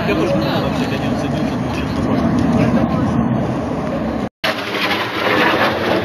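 Outdoor street noise: a steady low engine rumble with indistinct voices. It cuts off abruptly about four seconds in and gives way to a steady, hissing rush of noise.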